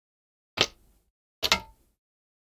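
Two sharp plastic clicks, about half a second in and about a second and a half in, from the bottom cover of an MSI GS66 Stealth laptop being pried off. The second click is doubled, as its clips snap loose.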